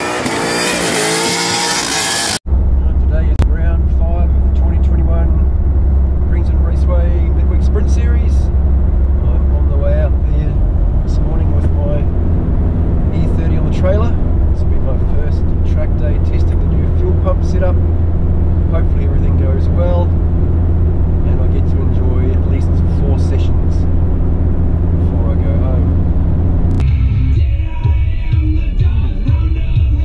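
For the first couple of seconds, a stunt car doing a burnout: engine revving and tyres screeching. It cuts off abruptly, and the rest is a car's engine and road noise heard inside the cabin while driving, a steady low drone.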